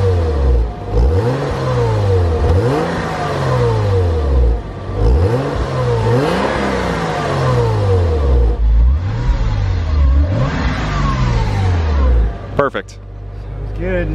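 A 1999 Porsche Boxster's 2.5-litre flat-six, heard right at the tailpipe, revved up and back down about five times, then settling to idle near the end. It runs smoothly with no knocking or tapping, the noise having faded once the engine warmed up.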